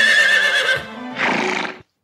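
Cartoon horse whinnying, one long call with a shaking, wavering pitch over soundtrack music, followed by a short breathy burst. The sound cuts off just before the end.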